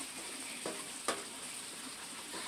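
Steady faint hiss of outdoor night background, with one small click just after a second in; no fox call is heard.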